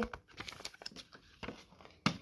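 Faint rustling and soft clicks of a paper leaflet and card-stock inserts being handled.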